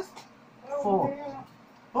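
Speech only: a man's voice saying one drawn-out word in the middle, with quiet pauses on either side.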